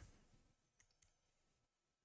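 Near silence: room tone, with one faint click right at the start and a couple of fainter ticks about a second in.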